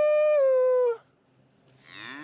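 A beef cow mooing: one long, loud call that holds its pitch, dips slightly and stops about a second in. Another moo begins near the end.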